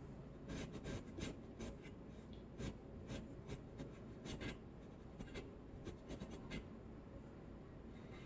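Short scratchy strokes of something drawn across a surface, coming in irregular runs for about six seconds and then stopping.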